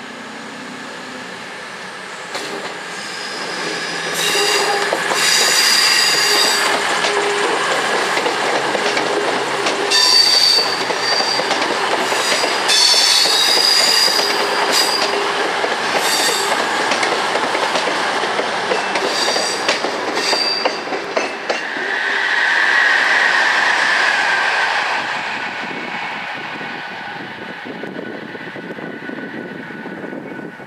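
A Virgin Super Voyager (Class 221) diesel-electric train passing close at moderate speed. High-pitched wheel squeal comes and goes over the first twenty seconds or so, the engine and running noise swell as the cars go by, and the sound fades near the end.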